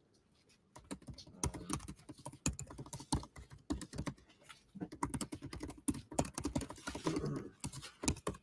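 Computer keyboard being typed on: quick, irregular keystroke clicks that begin about a second in.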